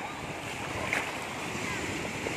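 Shallow sea surf washing steadily around the feet, with wind buffeting the microphone. A brief sharp sound stands out about a second in.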